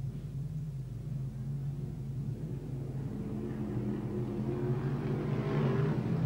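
A pack of modified rod speedway cars running slowly as they form up for a restart, a steady low engine drone. Over the last few seconds it rises a little in pitch and grows louder as the field starts to pick up speed.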